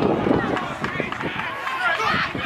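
Lacrosse players running hard on artificial turf, a quick patter of footfalls and knocks, with voices shouting over it.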